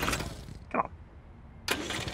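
Cartoon Mini's engine spluttering as it runs out of petrol: a sudden cough at the start that dies away, then another sputter near the end.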